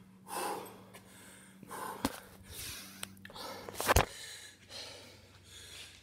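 A man breathing hard, out of breath after two minutes of burpees: several heavy breaths in and out, with two sharp clicks about two and four seconds in, over a steady low hum.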